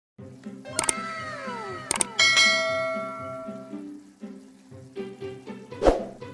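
Intro background music with a steady beat, overlaid with falling-pitch sound effects, a ringing chime about two seconds in, and a loud whoosh near the end.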